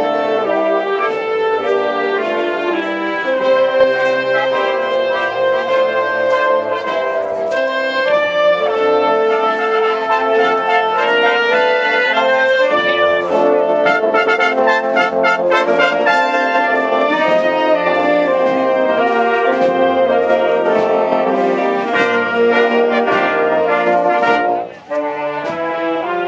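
A marching band of brass and woodwinds (clarinets, saxophone, euphonium) playing a processional march, with a run of sharp percussive strikes midway. The music dips briefly near the end.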